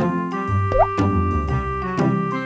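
Upbeat children's background music with a steady beat, and a short rising 'bloop' sound effect about three quarters of a second in.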